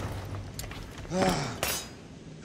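A person's short pained groan, falling in pitch, about a second in, with faint clinks of debris around it.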